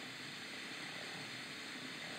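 Faint, steady hiss with no distinct event: background noise in a pause between recorded speech clips.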